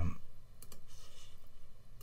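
A few faint clicks from a computer mouse or keyboard being worked, after a spoken 'um' trails off.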